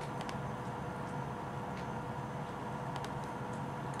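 Room tone: a steady hum with a few faint clicks scattered through it.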